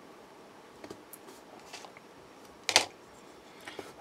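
Cast resin model-kit parts being handled by hand: a few faint light clicks, then one louder, sharp handling click a little under three seconds in, over low room noise.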